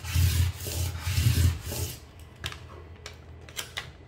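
Plastic scraper tool rubbing firmly back and forth over transfer tape on a vinyl sheet to burnish it down, in strokes lasting about two seconds. This is followed by quieter crackling ticks as the sheet is handled and its backing liner starts to lift.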